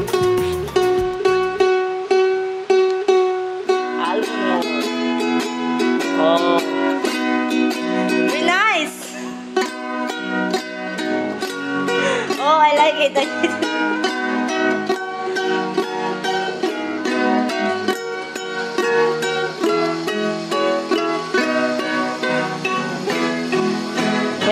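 A ukulele being played, picked melody notes and chords, with a voice singing along in places.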